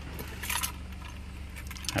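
Keys and a Ford key fob on a keyring jangling in hand, in two short spells, over the low steady hum of the pickup's idling engine.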